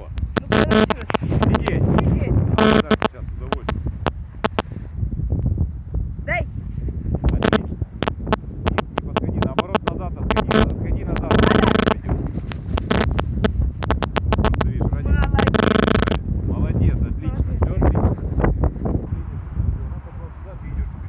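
Wind buffeting the camera's microphone: a constant low rumble with crackling and several louder gusts.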